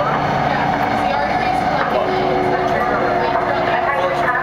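Canada Line metro train running through a tunnel: a loud, steady rush of wheel and running noise, with a steady hum coming in about halfway. People's voices talk underneath.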